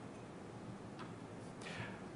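Quiet room tone with a single faint click about a second in, made at the lectern where the presenter's hand rests by his laptop.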